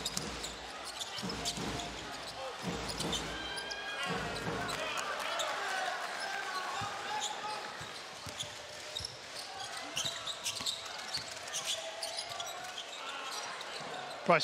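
Basketball arena sound during play: a steady crowd noise with voices, and a basketball bouncing on the hardwood court in short knocks throughout.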